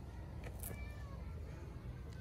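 A faint, short, high-pitched animal call whose pitch falls, about half a second in, just after a soft click, over a low, steady background.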